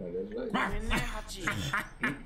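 A cartoon dog in the anime soundtrack barking and whimpering in short yips, with people laughing over it.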